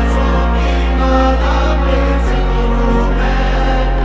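Music: singing voices over held low chords, the bass note shifting a little past two seconds in.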